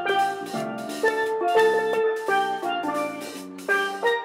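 Steel band playing a lively tune on steelpans: quick, ringing struck notes in a steady rhythm.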